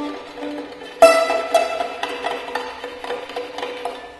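Prepared and amplified violin played in rapid, short percussive notes, about four or five a second, with a sharp loud attack about a second in that fades away.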